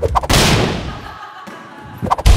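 A short click, then about a third of a second in a loud bang that fades away over about a second.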